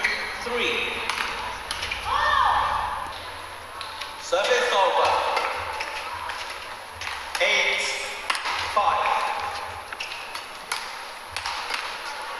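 Badminton rally: rackets striking a shuttlecock as a run of sharp clicks, with players shouting in bursts between strokes.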